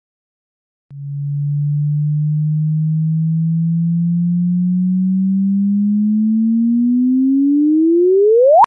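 Synthetic pure-tone chirp, a sonified gravitational-wave signal of two black holes spiralling together: a low tone starts about a second in, rises slowly in pitch, then climbs faster near the end.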